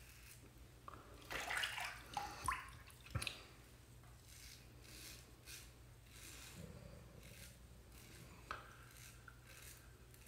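Adjustable safety razor scraping through lathered two-day stubble on a cross-grain pass, a faint scratching repeated stroke after stroke. About a second in there is a louder stretch of handling noise with a couple of sharp clicks.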